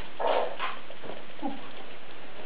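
Brief non-word human vocal sounds: a sharp smack at the very start, then a short burst of voice and a couple of quieter ones about a second in.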